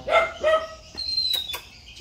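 A puppy yipping twice in quick succession, then a thin, high whine that falls slightly.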